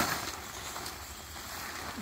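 Soft, even rustling of a nylon tent rain fly as it is handled and lowered to the ground.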